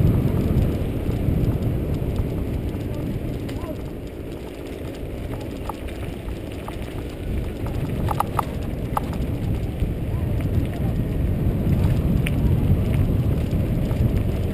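Wind buffeting a bike-mounted camera's microphone over the rumble of mountain-bike tyres rolling on a dirt road. A few short high squeaks come a little past halfway.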